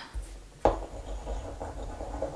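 Handling sounds of small objects: a single sharp knock about two-thirds of a second in, then faint rubbing and scraping.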